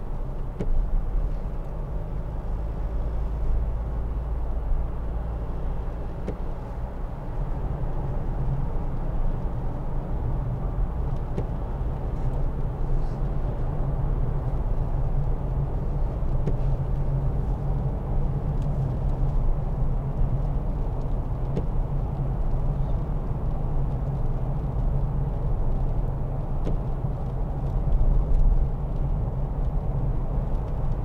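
Cabin noise of a Mitsubishi L200 pickup at a steady cruise: the 2.5 DI-D four-cylinder turbodiesel's low drone mixed with tyre and road noise, heard from inside the cab.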